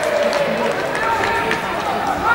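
Players' voices calling out across an open football pitch, drawn-out shouts that slide in pitch over the background noise of play.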